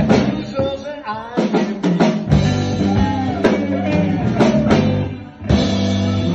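Small blues band playing a shuffle in G live: electric guitar, bass and drum kit, with drum hits marking the beat. The sound drops out briefly about five seconds in, then the full band comes straight back in.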